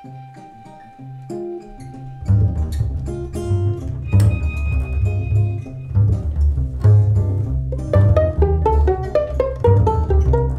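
Acoustic jazz trio of violin, double bass and acoustic guitar playing a waltz. A soft held violin note opens, then the plucked double bass comes in loudly about two seconds in, with guitar and violin above it.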